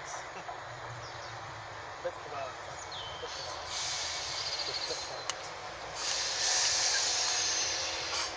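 Two coupled Class 321 electric multiple units running into the platform and slowing. A steady rumble of wheels on rail gets louder in the second half as the cars roll past close by, with a hiss rising over it in two spells.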